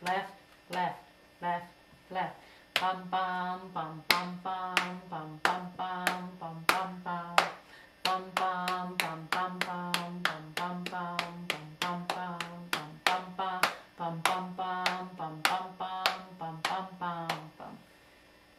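A woman sings a syncopated short-long-short rhythm on a repeated 'bum' syllable, held on one steady pitch, over a steady beat of sharp hand taps.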